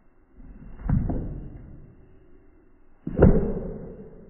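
Two sudden muffled booms, one about a second in and a louder one about three seconds in, each dying away over roughly a second, in dull, heavily degraded audio with no highs.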